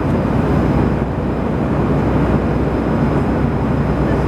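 Steady cabin noise of a jet airliner in cruise: an even, low rush of engines and airflow heard from inside the cabin.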